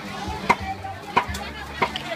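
Cleaver chopping on a block, three sharp strikes about two-thirds of a second apart.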